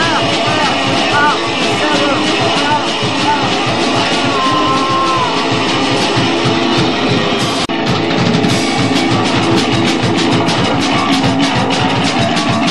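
Punk rock band playing, from a 1984 demo tape recording: guitar, bass and drums with vocals in the first part. The sound cuts out for an instant about two-thirds of the way through, after which fast, even drumming drives on.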